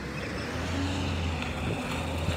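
Diesel engine of a side-loader garbage truck running with a steady low rumble as the truck drives away.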